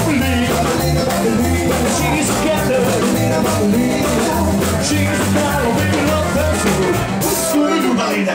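Rockabilly band playing live: upright double bass, acoustic guitar, electric guitar and drum kit, with a cymbal crash about seven seconds in.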